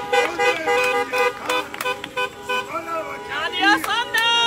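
Car horns beeping in short, repeated, overlapping toots, with voices calling out in praise over them in the second half.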